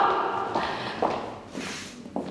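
A few separate footsteps on a hard floor, as a voice trails off at the very start.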